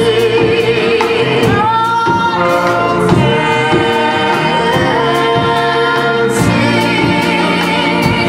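Live musical-theatre number: several singers in harmony holding long notes over a band with drums and keyboard.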